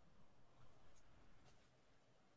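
Near silence: faint room noise over a video call, with no distinct event.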